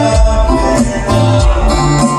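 Live band music: acoustic guitars playing over a bass line that moves every half second or so.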